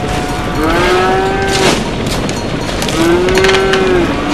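Two long, drawn-out calls, each held at a steady pitch for about a second, the first about half a second in and the second near the end, over a constant hiss.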